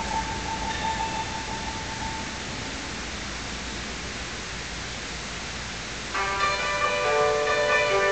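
Yangqin (Chinese hammered dulcimer) with a high, bell-like ringing note that fades away over the first two seconds. A few seconds of faint hiss follow. About six seconds in, a new chord of several struck notes rings out together and sustains.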